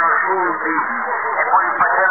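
Men's voices received over a shortwave radio on the 45-metre band, thin and narrow-sounding, running on without pause. They are too garbled to make out words.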